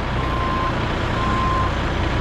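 Vehicle backup alarm beeping, a steady single-pitch beep about once a second, heard twice, over a steady low engine rumble.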